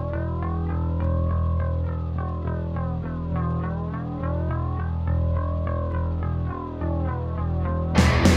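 Instrumental break in a rock song: deep held bass notes under an effects-laden electric guitar whose tone sweeps slowly up and down in arcs, with no vocals or cymbals.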